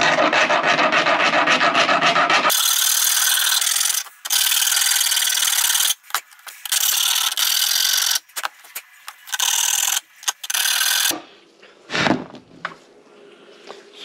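Round file rasping a burr off a pit-bike fork's slide bushing. Quick, evenly repeated strokes come first, then longer runs of strokes with short pauses, stopping about eleven seconds in. A single knock follows near the end.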